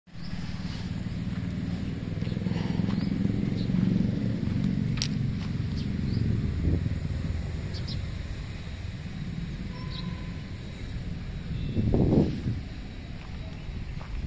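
Maruti Suzuki Swift Dzire's 1.3-litre DDiS four-cylinder diesel engine idling, a steady low rumble, with a louder swell about twelve seconds in.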